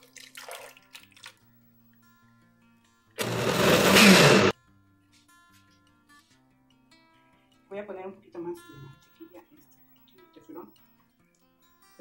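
Countertop blender runs for about a second and a half, blending soaked oats, banana, egg and milk into pancake batter, then stops abruptly.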